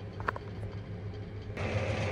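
Low steady background hum with faint noise. About one and a half seconds in it cuts suddenly to a different, hissier steady hum.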